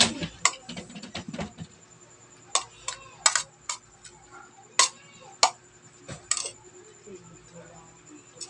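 Metal cutlery clinking and scraping against a ceramic plate while someone eats: a string of sharp, separate clinks, the first right at the start and several more in a cluster around the middle.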